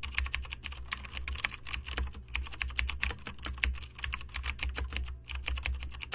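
Keyboard typing clicks as a search query is typed out: quick, irregular taps, several a second, with brief pauses about two and five seconds in.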